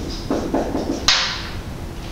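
Marker writing on a whiteboard: a run of short strokes, then one sharper, louder scrape about a second in that fades quickly.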